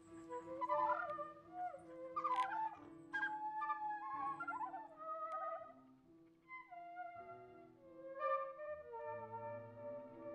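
Soundtrack music: a melody of sliding, wavering notes over sustained lower notes, with a low bass part coming in near the end.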